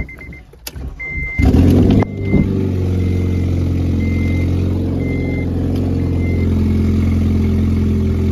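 Honda Civic 1.8-litre four-cylinder engine started: it catches about a second and a half in, flares briefly, then settles into a steady, loud idle. The exhaust is open because the catalytic converter and header are missing. A dashboard warning chime beeps on and off over it.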